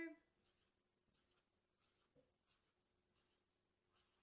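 Pen drawing small dots on paper: faint, short scratching strokes, about one to two a second.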